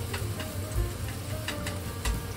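Minced onion sizzling in olive oil in a frying pan as it is stirred with chopsticks to brown it, with scattered small clicks through the frying.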